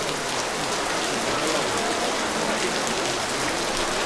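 A steady, even hiss of noise with no speech over it.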